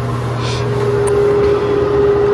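Steady machine hum with a constant mid-pitched tone that comes in shortly after the start.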